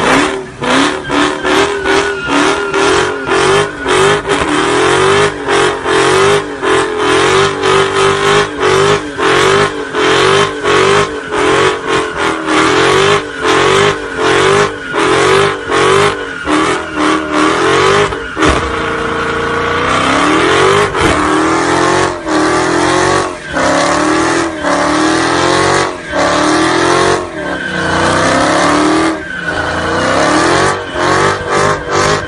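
Dodge Charger Hellcat's supercharged V8 held at full revs in a burnout, bouncing off the rev limiter in quick, regular stutters, about two to three a second, while the rear tyres spin and smoke. A little past halfway the revs hold and rise more smoothly for a couple of seconds, then the limiter stutter resumes.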